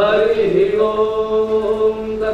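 Young male voices chanting Sanskrit Vedic hymns together, sliding up into one long held note.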